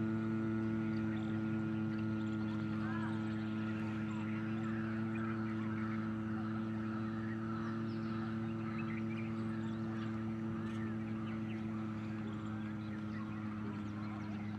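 A man's long, steady nasal hum held at one low pitch through a single breath out: the bee-like humming of Bhramari pranayama. Faint bird chirps sound behind it.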